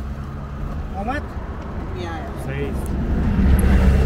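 Low vehicle engine rumble that grows louder about three seconds in, with a single sharp click at the very start and brief voices.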